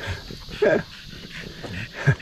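French bulldog making a short, pitched vocal sound a little over half a second in, with fainter sounds from the dogs around it.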